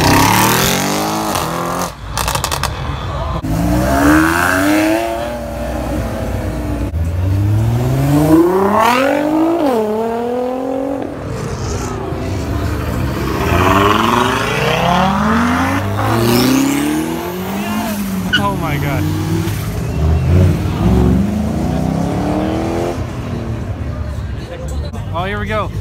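Performance car engines accelerating hard past the camera, several cars in turn. The pitch climbs through each gear and drops sharply at each upshift.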